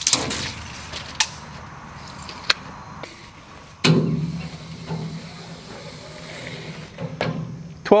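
Scattered clicks and knocks of a steel tape measure being hooked and pulled out along a steel dump-trailer bed. A louder knock comes about four seconds in, followed by a low hum that fades over a couple of seconds.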